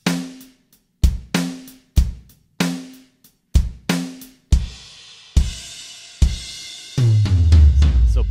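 Dry acoustic drum kit samples triggered one hit at a time: kick, snare and hi-hat strikes about every half second, then cymbal crashes that ring on, with a low floor tom ringing out near the end. Close, dry recording without room mics or reverb, big but still kind of tight.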